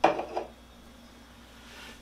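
An aluminium beer can set down on a desk: a sharp knock at the start and a smaller knock just under half a second later.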